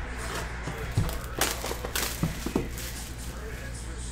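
Hands opening a cardboard trading-card box: its wrapping crinkles, with a few sharp crackles and taps, over a steady low hum.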